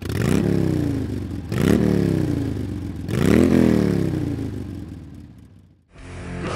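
A motorcycle-like engine revving three times, each rev climbing quickly in pitch and then winding down slowly, the last one fading away before it cuts off near the end.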